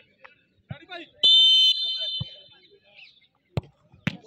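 Referee's whistle blown once, about a second in: a shrill blast of about half a second, the signal to take the penalty kick. Near the end, a single sharp thud as the football is struck.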